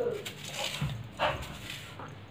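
Pit bull dog vocalising in play: a short falling whine at the start, then two short sounds a little under and a little over a second in, the second the loudest.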